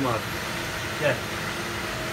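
Steady fan-like whir and hiss of a commercial kitchen, with a faint steady hum underneath; a man says a single word about a second in.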